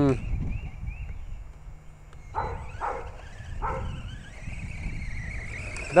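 Faint high whine of the RC rock racer's brushless motor, its pitch rising and falling with the throttle as the truck drives over grass. A dog gives three short barks a little after the middle.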